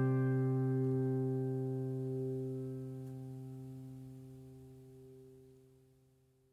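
Final acoustic guitar chord ringing out and slowly dying away, fading to silence near the end.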